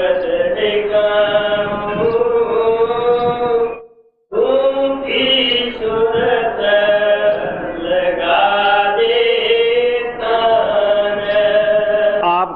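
A voice chanting a devotional verse in long, held, melodic lines. The sound cuts out completely for about half a second around four seconds in, then the chanting resumes.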